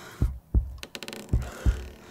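A slow heartbeat sound effect: two low double thumps, about one beat a second, with a quick run of sharp clicks between them.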